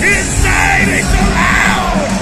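A heavy metal band playing live in an arena, heard from the stands: loud distorted band sound with heavy bass and drums under long, yelled vocal lines.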